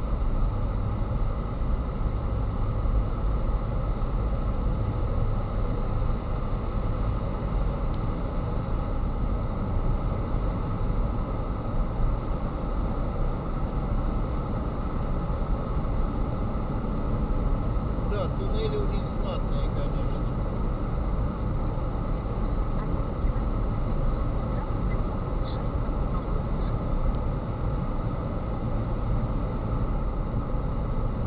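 Steady road and engine noise of a car driving at speed, heard from inside the cabin while it runs through a road tunnel.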